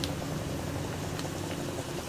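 Chopped onions sizzling gently in hot oil in a pan, over a steady low hum.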